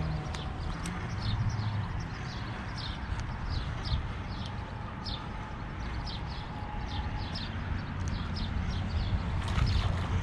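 Low wind rumble on the microphone under a run of short, high, falling chirps, about two a second.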